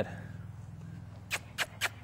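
Three quick, sharp kissing sounds made with the lips, about four a second, starting a bit over a second in: a horse trainer's cue to the horse to turn and face him. A steady low hum runs underneath.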